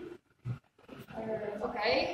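People talking, with a brief pause in the first second that holds one soft low thump.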